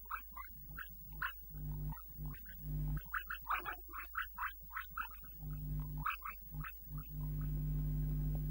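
Animal-like snarling and growling in rapid bursts, coming in three runs of a second or two each. A steady low hum returns near the end.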